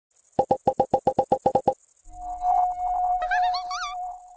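Synthesized logo sting. A high, fast electronic trill runs under a quick string of about a dozen short blips, about eight a second. These give way to a held tone over a low rumble, with warbling chirps that rise and fall near the end.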